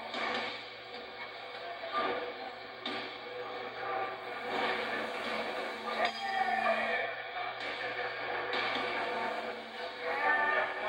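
Music mixed with indistinct voices and hall noise, played back through a television speaker, with a few sharp knocks, the loudest about six seconds in.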